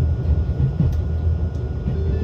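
Low, steady rumble of a 383-series Shinano limited-express electric train rolling slowly out of the station, heard from inside the passenger cabin, with a faint click or two from the wheels on the rails.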